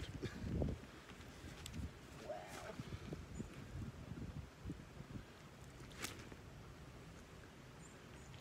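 Quiet handling of a landing net and a freshly landed pike on the bank: a louder rustle at the start, then faint scattered soft knocks. A sharp click comes about six seconds in, and a brief faint whine about two and a half seconds in.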